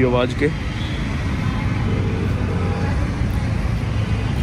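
Phone ringback tone from a smartphone on loudspeaker: a low double ring, two short beeps about two seconds in, as the outgoing call rings unanswered. Steady road-traffic rumble underneath.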